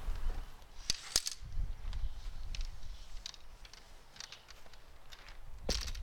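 A few sharp knocks and clicks from metal-framed solar panels being handled and set against a wooden frame: two close together about a second in, faint ticks after, and a louder knock near the end, over a low background rumble.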